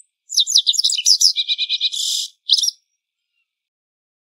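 Japanese wagtail singing: a fast run of high chirping notes lasting about two seconds, then one short call a moment later.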